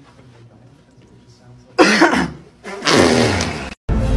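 A young man coughing loudly and harshly twice, a short cough about two seconds in, then a longer, rougher one. The sound cuts off abruptly near the end.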